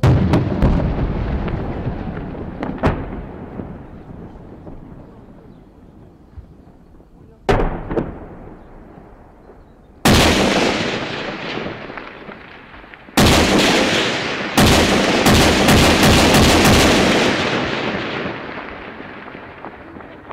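Artillery fire and explosions booming across a city: a loud blast at the start, more booms about 3, 7.5 and 10 seconds in, each with a long echo that dies away slowly. From about 13 seconds a dense run of rapid cracks and booms follows, then fades.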